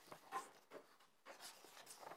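Near silence of a meeting room, broken by a few faint, short rustling and handling noises.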